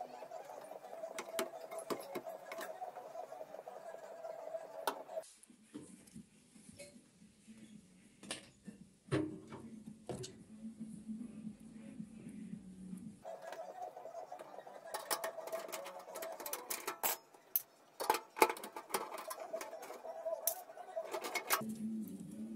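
Clicks and light knocks of computer parts being handled inside a desktop PC case as a RAM module is unlatched and lifted out and the CPU cooler is taken off. A steady hum runs underneath, dropping out for several seconds in the middle.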